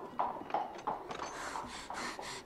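Horse hooves clip-clopping at a steady trot, about three hoofbeats a second: a radio-drama sound effect.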